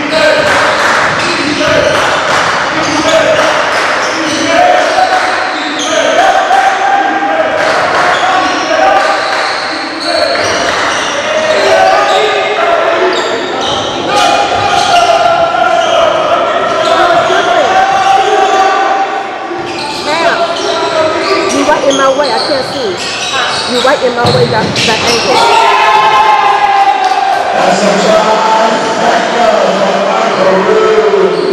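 A basketball being dribbled on a hardwood gym floor during live play. Voices of players and onlookers echo throughout the large gym.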